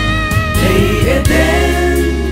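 A women's vocal group singing a gospel song in harmony, holding long notes over steady instrumental backing with a bass line.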